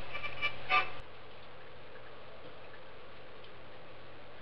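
Music cuts off with a click about a second in, leaving a steady hiss from the recording with a faint hum.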